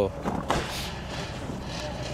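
Steady outdoor background noise with no clear single source, and a brief faint sound about half a second in.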